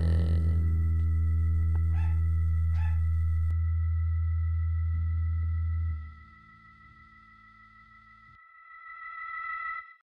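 A song's final low, distorted guitar chord ringing out and dying away after about six seconds, with two short sounds near two and three seconds in. After that only a faint steady high-pitched tone remains, which swells again just before the end.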